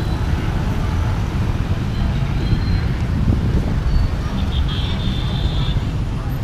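Busy city street traffic: a steady rumble of motorbikes, cars and tuk-tuks passing close by, with a brief high-pitched tone about five seconds in.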